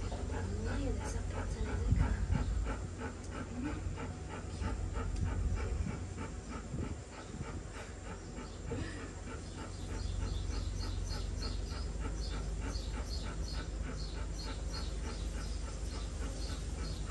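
Golden retriever panting rapidly and steadily, about three breaths a second, on a hot day after a hose bath, with a few short soft whines in the first half. There is a low thump about two seconds in.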